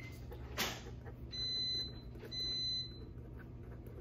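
Two electronic beeps about a second apart, each about half a second long and held at one high pitch, over a steady low hum, with a short knock before the first beep.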